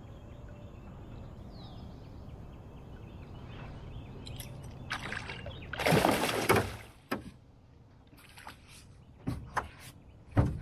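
A hooked catfish on a bankline thrashing at the surface beside an aluminium jon boat. The loud splashing comes about six seconds in and lasts under a second. A few sharp knocks follow.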